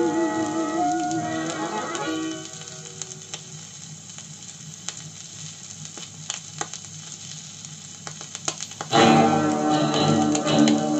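A 1950s long-playing record on a portable record player: the last notes of a song die away about two and a half seconds in, then the unrecorded groove between tracks gives surface hiss and scattered crackles and clicks, until the next piece starts abruptly near the end.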